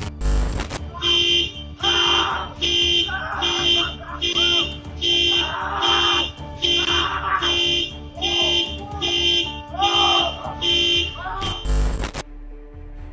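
A car alarm sounding the horn in a steady pulse, about two honks a second, with a person screaming over it.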